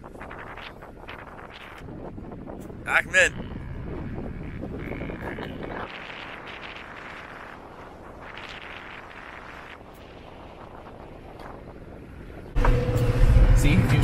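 Low, steady outdoor wind noise with faint voices for most of the stretch. About a second and a half before the end, a vehicle engine comes in loudly, running steadily under people talking.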